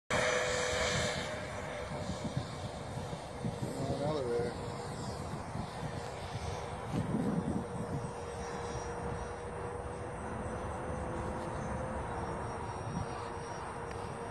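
Radio-controlled Rebel sport jet running at high power on its takeoff and climb-out, a steady whine with a thin high-pitched tone on top, loudest in the first second and then holding steady as the jet moves away.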